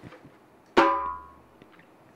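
A single slap stroke on a rope-tuned djembe with a skin head, struck with the open hand about a second in. It is a sharp crack whose ring dies away within about a second.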